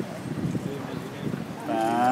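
A person's drawn-out vocal exclamation, a long held 'ooh'-like sound lasting about half a second near the end, over a low murmur of street chatter.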